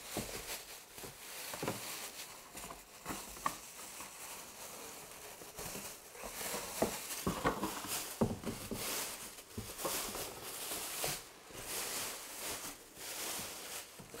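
Thin plastic bag rustling and crinkling in irregular bursts as it is handled and pulled over a cardboard box.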